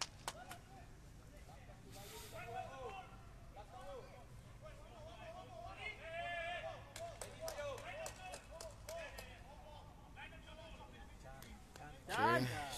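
Faint, distant voices calling out across an open stadium over a steady low rumble, with a few light clicks.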